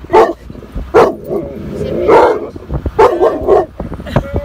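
A dog barking about five times in quick, loud bursts, worked up at the sight of bison outside the car.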